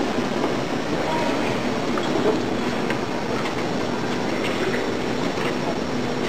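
Steady din of a large crowd talking and cheering in a big hall, with a few scattered claps.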